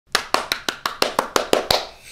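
A man clapping his hands rapidly, about ten quick, evenly spaced claps at roughly six a second, stopping shortly before the end.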